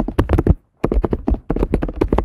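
Fast typing on a computer keyboard: a quick run of key clicks, a short pause about half a second in, then another run of keystrokes.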